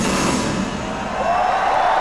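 Live heavy rock band's guitar music breaking off about half a second in, leaving a loud wash of noise; near the end a held note slides up and sustains.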